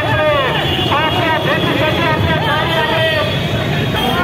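A crowd of many people shouting at once, their voices overlapping, over a steady low rumble of motorcycle engines.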